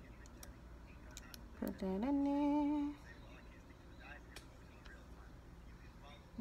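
A woman hums a single steady held note for about a second, around two seconds in, with a few faint small clicks around it.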